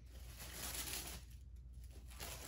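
Faint rustling of tissue paper being unfolded and pulled apart by hand, easing off after about a second.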